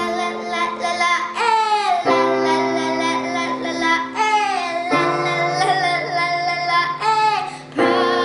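A young girl singing a pop song with a sliding, held melody over keyboard chords. The chords hold steady and change every two to three seconds.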